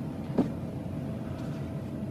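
Quiet room with a low steady hum, and a single short click about half a second in.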